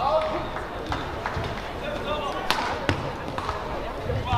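A badminton rally: several sharp racket strikes on the shuttlecock, the strongest about two and a half seconds in, with shoes squeaking on the court mat between them.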